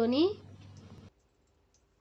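A woman's voice finishing a phrase, then near silence: a faint hum that cuts off about a second in.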